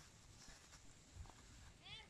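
Near silence, with a few faint soft clicks; near the end, a brief faint call with a sliding pitch from an animal.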